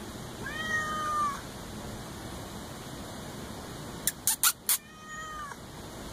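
Black-and-white domestic cat meowing twice, about four seconds apart, each call fairly level and dipping at the end. Just before the second meow there is a quick run of four sharp clicks.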